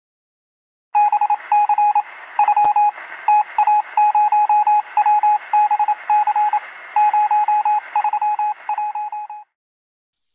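Morse code beeps: a single tone keyed in quick short and long pulses over a hiss of radio static. It starts about a second in and stops suddenly near the end.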